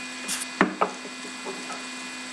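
Handling noises on a tabletop: a short rustle, then two sharp knocks close together and a few faint taps, as things are moved about.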